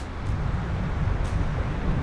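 Wind rumbling steadily on the microphone over the wash of surf breaking on the shore.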